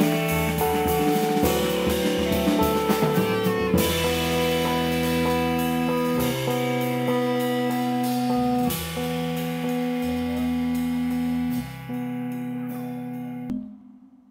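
Small jazz group playing live: bass clarinet over upright bass and drum kit. There are busy drum and cymbal strokes for the first few seconds, then longer held notes, and the music drops away suddenly near the end.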